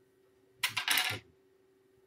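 A short burst of metallic clinking about half a second in, small metal parts knocking together for about half a second.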